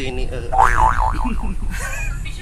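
Low, steady rumble of a double-decker bus under way, heard from the upper deck. About half a second in, a loud pitched sound rises and falls several times over it, then slides down.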